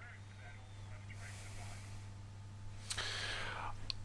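A faint steady electrical hum with low background hiss on a live link during a pause in the talk, then a breath-like intake of air about three seconds in, just before speech resumes.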